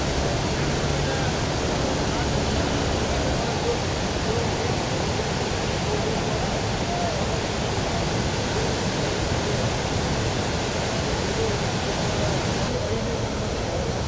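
Muddy flood river in spate, its churning standing waves making a steady, unbroken rushing of water.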